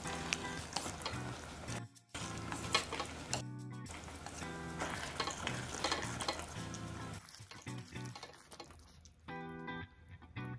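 Thick black-bean sauce sizzling and bubbling in a steel pot on a portable gas burner, with the click and scrape of metal chopsticks stirring through rice cakes and glass noodles. Background music plays under it.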